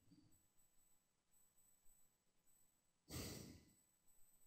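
Near silence, broken about three seconds in by a single short, breathy exhale close to the microphone, a sigh that fades within about half a second.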